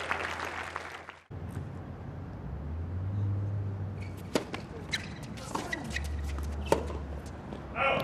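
Tennis racket strikes on the ball during a rally: a serve about four seconds in, then several more sharp hits, the loudest about two seconds before the end, over a low steady hum. Crowd noise fills the first second and cuts off abruptly.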